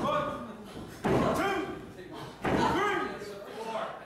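A wrestler's booted kicks landing on an opponent slumped in the ring corner: three sudden thuds, a little over a second apart, each followed by shouting.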